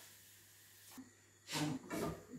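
Near silence: room tone, then two brief voice sounds about a second and a half in.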